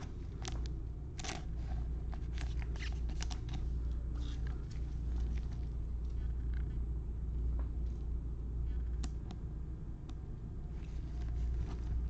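Gloved hands handling a trading card in plastic: light rustles and small clicks of a soft card sleeve and a rigid plastic top loader as the sleeved card is slid into it. The clicks cluster in the first few seconds and come once more later, over a steady low hum.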